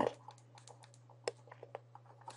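Faint, scattered light clicks of a stylus tapping on a pen tablet during handwriting, the sharpest just past a second in.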